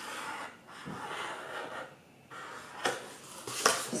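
Felt-tip marker scratching on corrugated cardboard in short strokes, pausing briefly about halfway through. Near the end the cardboard is lifted and handled, with a couple of sharp knocks.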